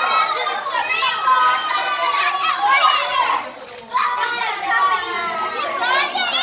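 Several young children's voices talking and chattering over one another, with a brief lull about three and a half seconds in.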